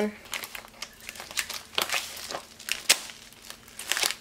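Parcel packaging crinkling and rustling as it is handled and opened by hand. The crackles are irregular, with a sharper snap about three seconds in.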